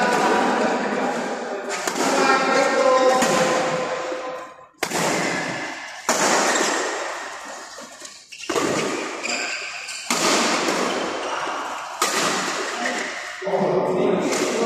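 Badminton rally in a sports hall: about seven sharp racket hits on the shuttlecock at irregular gaps of one to two seconds, each followed by a long echo in the hall, with players' voices calling in the first few seconds.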